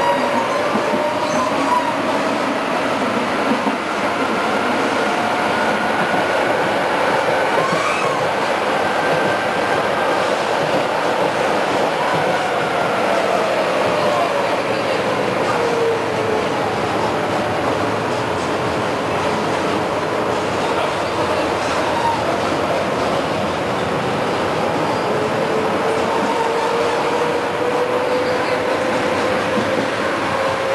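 Tram riding along its line, heard from inside: steady running noise of wheels on rails with a motor whine that rises, falls and rises again in pitch as the tram speeds up and slows.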